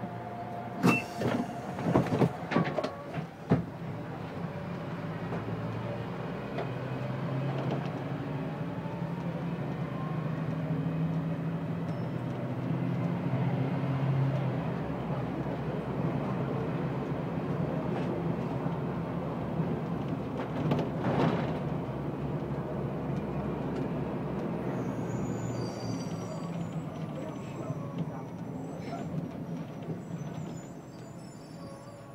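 City bus engine heard from inside the bus while driving: a few sharp knocks and rattles in the first few seconds, then the engine hum rises as the bus pulls away and picks up speed, holds steady, and eases off as it slows near the end, with faint high squeaks as it draws up to the stop.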